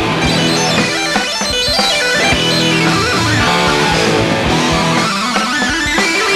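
A hard rock band playing live through an instrumental passage with no vocals: distorted electric guitar with bending notes over a steady drum beat.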